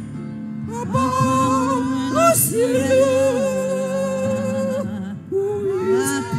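A small group of women singing a gospel song into hand microphones, several voices in harmony holding long notes. The singing picks up about a second in, and a new phrase starts just after a short break near the end.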